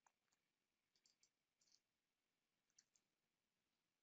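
Near silence, with a few very faint, scattered clicks.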